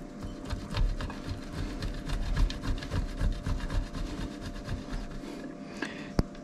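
A hard, salty sfela cheese is grated on a stainless steel box grater, making repeated rasping scrapes.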